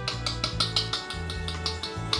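Background music: held notes over a quick, steady beat.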